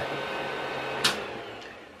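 Creality CR-10 Mini 3D printer running with a steady whir, then a sharp click about a second in, after which the whir fades away: the printer's power being switched off at the wall.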